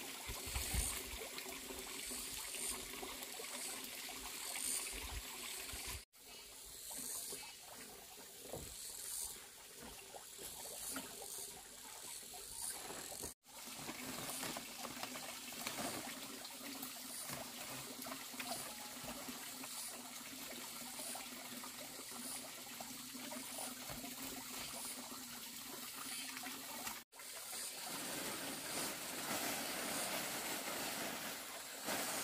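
Outdoor ambience: a steady faint rush like trickling water, with a high-pitched chirp repeating about once a second through much of it. The sound drops out for an instant three times.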